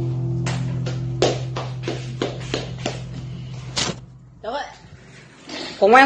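An acoustic guitar's last chord rings on and fades away over about four seconds. About ten sharp handclaps sound over it, and a voice comes in near the end.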